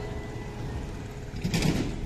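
Steady rumble of street traffic, with a short burst of noise about one and a half seconds in.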